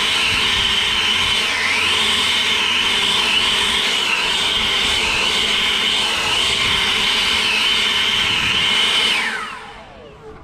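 EGO POWER+ 650 CFM battery-powered leaf blower running at high speed, a steady rush of air under a high electric fan whine that dips briefly in pitch again and again. Near the end it winds down, the whine falling away as the trigger is let go.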